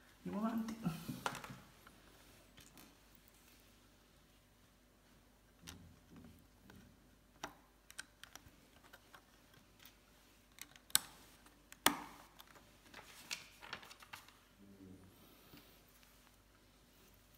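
LEGO plastic bricks being handled and pressed together on a tabletop: a string of sharp, irregular plastic clicks and snaps, the loudest two about eleven and twelve seconds in.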